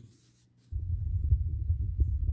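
A loud, low, irregular rumble starts suddenly about two-thirds of a second in and keeps going.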